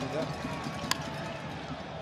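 Stadium crowd murmur, with one sharp crack of the bat meeting the ball about a second in, sending a ground ball toward third.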